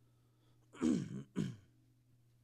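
A man clearing his throat twice, starting about a second in; the second clear is shorter than the first.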